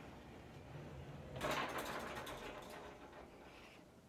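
Metal drawer slides rolling and rattling as a tall pull-out rod cabinet is pulled open. The sound starts about a second and a half in, is loudest at its start and lasts about two seconds.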